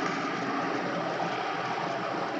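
Steady background noise: an even hiss with a faint hum, no distinct event.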